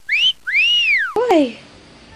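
A whistle sound effect: a short upward whistle, then a long whistle that rises and falls, then a quick falling note with a click about a second and a quarter in. Much quieter after that.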